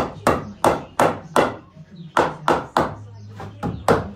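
Claw hammer nailing into timber stud framing: a run of sharp blows about three a second, a short pause a little before halfway, then another run of blows.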